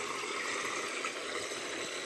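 Water from a return pipe jetting and splashing steadily into an aquaponics fish tank, a constant splashing hiss.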